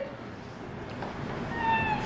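A short, high-pitched cry that falls slightly in pitch, about a second and a half in, over quiet room noise.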